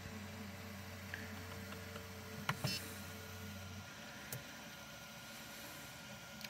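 Prusa Mini 3D printer running with a low, steady hum that stops about four seconds in, with a couple of faint clicks.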